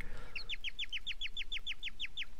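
A cartoon baby bird's chirping: a fast, even run of short chirps, each gliding downward in pitch, about seven a second, starting a moment in.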